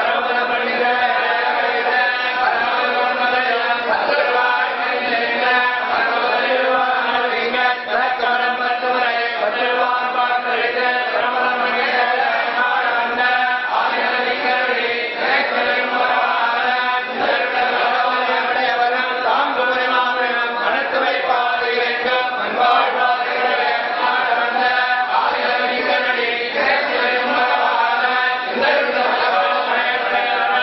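Group of voices chanting devotional hymns together in a steady, unbroken recitation during temple worship.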